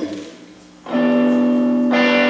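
Electric guitar through an amplifier: a chord struck about a second in and left ringing, with a fresh note picked near the end.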